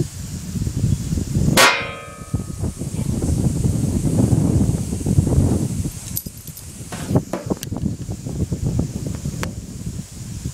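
A single sharp metallic clang with a short ringing tail about a second and a half in, followed by rumbling, rubbing noise of the phone being handled against its microphone and a few light knocks later on.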